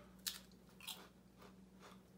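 Faint crunching of a strawberry-chocolate-coated potato chip being bitten and chewed: one sharp crunch about a quarter second in, a second about a second in, then a few softer ones.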